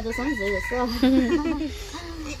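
A rooster crowing: one held call of just under a second, heard behind women talking.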